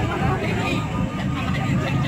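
People's voices, speech-like and unbroken by music, over a low steady hum.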